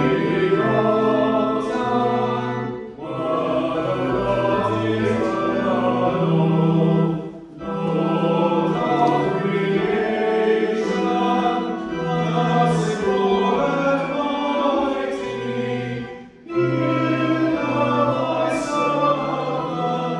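Congregation singing a hymn with organ accompaniment, in sung lines with brief breaks between them.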